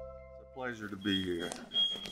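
The last notes of an intro jingle die away. About half a second in, a man's voice comes over the hall's PA, with a thin high steady tone of under a second mixed in.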